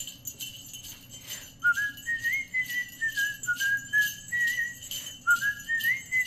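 Sleigh bells shaken in a steady rhythm, about three shakes a second. From about a second and a half in, a person whistles a stepping melody over them, pausing briefly near five seconds, as the introduction to a sung song.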